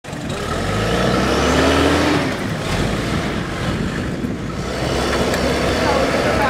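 SUV engine revving hard as the vehicle struggles in deep mud with its wheels spinning. The revs climb over the first two seconds, ease off, then rise again near the end.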